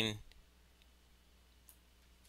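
Near silence: quiet room tone with two faint clicks, one about a second in and one near the end.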